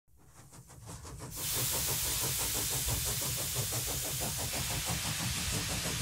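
Small model steam engine running on steam: a rapid, even exhaust beat of about seven strokes a second under a steady hiss of escaping steam. It fades in over the first second or so.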